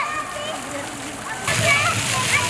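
Children's voices shouting and chattering over the steady spray and splashing of splash-pad fountain jets. The water grows louder about one and a half seconds in.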